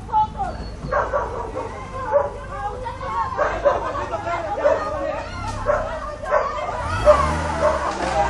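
A dog barking and yelping repeatedly over the voices of a crowd. Near the end a car engine starts up and keeps running with a low hum.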